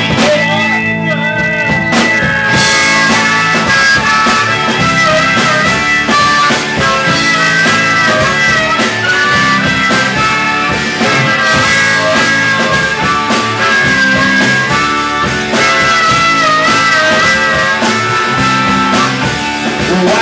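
Live rock band playing an instrumental break on electric guitar, bass and drums, with a harmonica wailing a wavering lead into the vocal microphone over the top.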